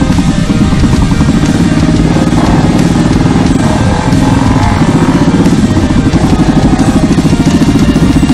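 Several motorcycle engines running and revving as the bikes pull away, heard together with loud background music.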